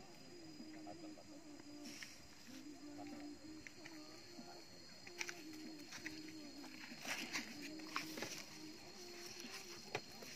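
Faint clicks and rustles of hands handling a small plastic bottle and bait packets while mixing dry fish bait in a plastic tub, with a cluster of clicks about seven to eight seconds in. Underneath, a faint distant pitched sound wavers up and down in steps.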